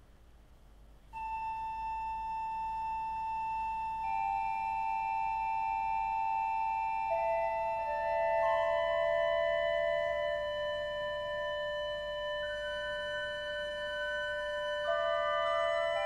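Organ playing slow, long-held notes: a single high note enters about a second in, and further notes join every few seconds, building into a sustained chord that shifts slowly.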